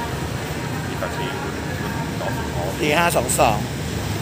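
Passenger coaches of a train rolling slowly past, with a steady low rumble of wheels on rail.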